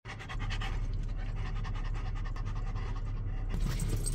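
A dog panting rapidly and steadily inside a car, over a low steady hum.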